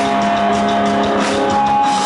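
Rock band playing loud and live: drum kit with held electric guitar notes, the guitar moving to a new sustained note about a second and a half in.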